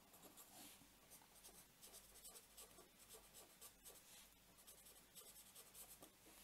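A pen writing on a sheet of paper: faint, quick, irregular strokes of handwriting as a line of words is written out.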